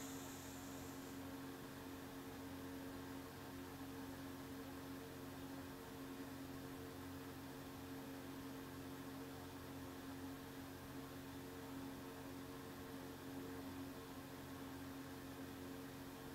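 Low, steady electrical hum with a faint hiss, unchanging throughout: background noise of the recording setup.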